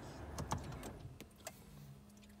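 A few faint clicks and rustles of a phone being handled inside a car's cabin, with a low steady hum coming in a little past a second in.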